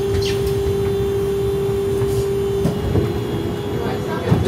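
Tatra T3 tram's door-closing warning signal: a steady single-pitched buzz that warns passengers to clear the doorway. About two-thirds in, the folding doors shut with a clunk, and the buzz carries on more faintly.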